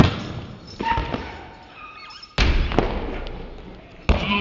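A rubber ball thudding on a concrete floor: a sharp hit at the start, a couple of smaller knocks about a second in, and a heavier thud about two and a half seconds in.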